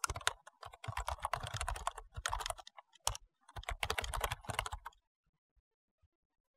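Irregular bursts of rapid clicks, stopping about five seconds in.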